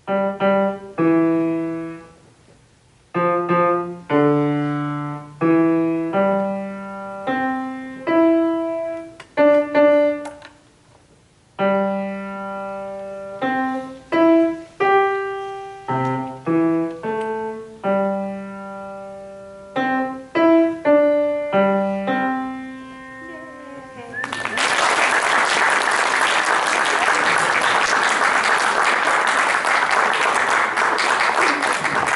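Grand piano played solo: short phrases of notes and chords with brief pauses between them, the piece ending about 24 seconds in. Audience applause follows, steady to the end.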